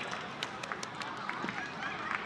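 Voices of footballers calling out on the pitch, over open-air stadium ambience, with scattered sharp clicks and knocks.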